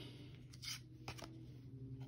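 Faint handling of a stack of trading cards in the hands: a few soft clicks and rustles, the loudest about two-thirds of a second in, over a low steady room hum.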